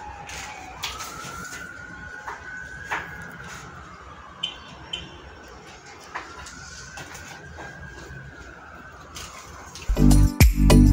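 Faint emergency-vehicle siren wailing, its pitch rising and falling slowly about twice. A few light knocks sound over it.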